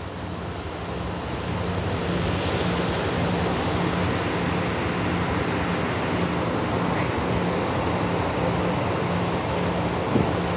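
Steady rushing street noise of passing traffic mixed with wind on the phone's microphone, growing louder over the first couple of seconds and then holding.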